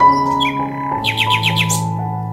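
Instrumental background music with held notes, and a bird calling over it: a short falling note near the start, then a quick run of about six high chirps from about a second in.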